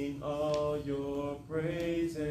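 A man singing a slow gospel song solo into a microphone, holding a few long notes one after another with short breaths between them.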